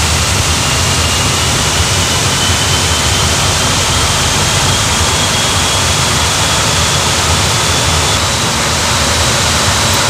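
Pratt & Whitney PW1100G turbofan being dry-cranked by its air starter, with no fuel and no ignition, to purge residual fuel, heard from the cockpit. A steady rushing noise carries a faint whine that rises slowly in pitch as the core spins up, then steps higher near the end.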